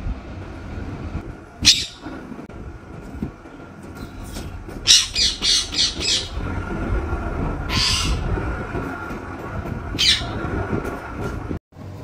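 Caged green parrots giving short, harsh squawks: a single call about two seconds in, a quick run of calls around the middle, then single calls near eight and ten seconds, over a low steady background rumble.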